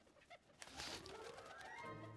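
Faint cooing of a white dove, with a faint rising tone beneath it toward the end.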